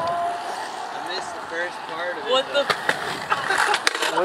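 Faint voices talking at a distance over a steady outdoor hiss, with a few sharp clacks in the last second and a half.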